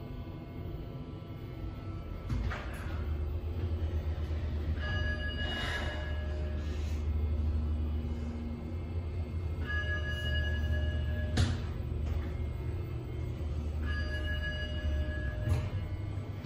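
Schindler 3300 traction elevator car travelling up: a low hum of the car in motion starts a couple of seconds in and runs until near the end. A held, several-note chime sounds three times, about every four to five seconds, as the car passes each floor, and there is a sharp click partway through.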